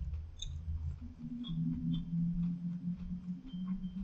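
A man's low, steady closed-mouth hum, starting about a second in and held for about three seconds, with faint light clicks over it.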